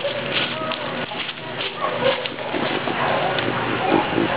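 A beagle sniffing the ground, her sniffs coming as irregular, pig-like grunting snorts.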